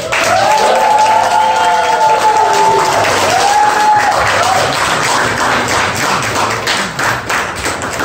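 Small audience clapping after an acoustic guitar piece ends, starting abruptly, with a few voices whooping over the first few seconds; the clapping thins out near the end.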